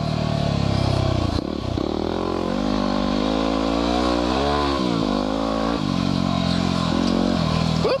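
Single-cylinder four-stroke engine of a 2010 Yamaha WR250R dual-sport motorcycle running under way on a dirt trail. Its pitch rises and falls with the throttle, with a quick dip and pickup in the middle, over the rumble of the ride.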